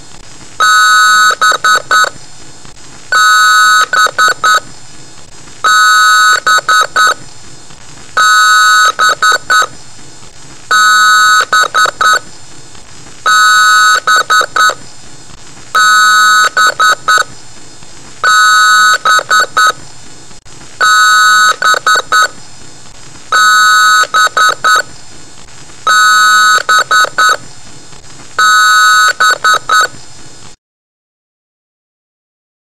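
Very loud electronic beeping in repeating groups about every two and a half seconds. Each group is a longer beep followed by three or four short ones, like a PC's power-on self-test beep code.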